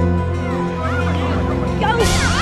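Background music with sustained notes. From about half a second in come high, squealing shouts of children playing outdoors, growing louder near the end.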